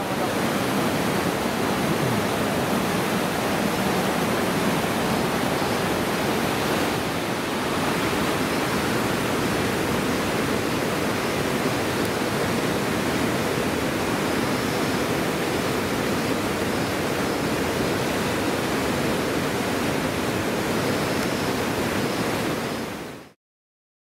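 River rapids rushing steadily over rock, one even wash of water noise that stops abruptly near the end.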